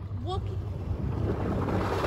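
A humpback whale's blow: a breathy whoosh of exhalation as it surfaces, swelling from about a second in. A steady low rumble runs underneath.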